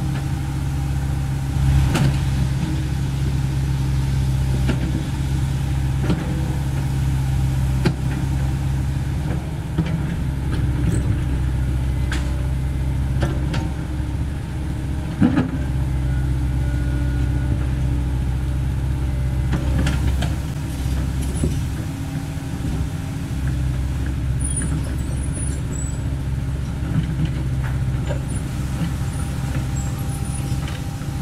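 CAT 307E2 mini excavator's diesel engine running steadily while digging, with sharp clanks and knocks scattered through it, the loudest about 15 seconds in.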